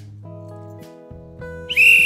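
A hand-held whistle blown once in a single high-pitched, steady blast starting near the end, a conductor's signal for the train, over soft background music.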